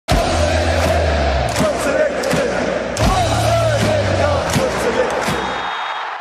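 Channel intro music with deep bass notes, mixed with a football crowd chanting. There is a sharp hit at the start and another about three seconds in, and it fades out near the end.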